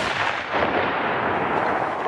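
Airstrike bomb explosion: a sudden blast followed by about two seconds of steady, even noise that begins to fade near the end.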